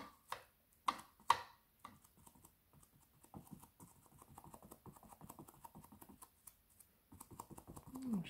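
A foam sponge dabbing and scrubbing acrylic paint on a stretched canvas, blending colours. There are a few sharper taps in the first two seconds, then a fast, faint patter of dabs.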